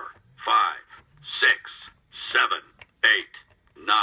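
A Toy Story 3 Buzz Lightyear talking toy phone answering key presses with short recorded voice clips, about one a second.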